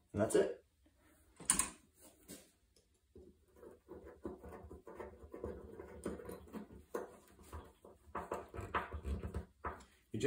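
Quiet handling of small Phillips screws being fitted by hand into the top cover of a Rotax engine's fuel pump, with two sharp clicks in the first couple of seconds, then a low, steady rustling of fingers and metal parts.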